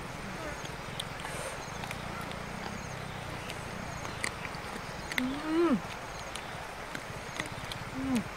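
Eating sounds: dogs and a woman chewing cooked meat, with scattered sharp crunching clicks. About five seconds in, a short hummed 'mm' from a woman's voice, rising then falling in pitch, is the loudest sound, and a briefer falling one comes at the very end.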